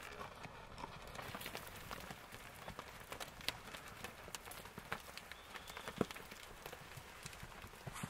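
Faint, irregular clicks and knocks of Hereford heifers' hooves on stony dirt as the herd walks past, with one sharper knock about six seconds in.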